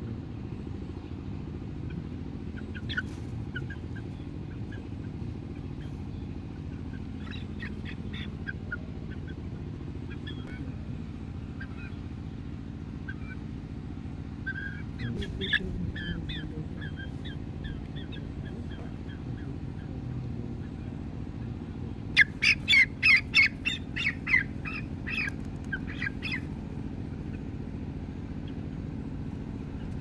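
A young chicken squawking: a few scattered calls, then a loud, rapid run of squawks about three-quarters of the way through, over a steady low background rumble.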